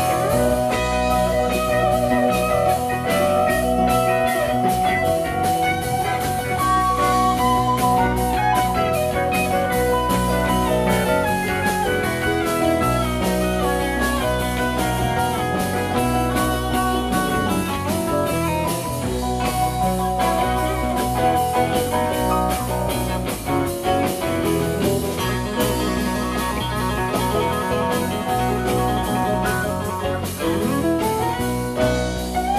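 Live rock band playing an instrumental jam: electric guitar lead lines over rhythm guitars, bass, drums and keyboards.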